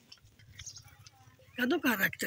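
Low background with faint small clicks and rustles for about a second and a half, then a woman starts speaking near the end.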